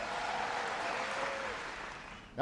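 Audience applauding, a steady spell of clapping that eases off slightly toward the end.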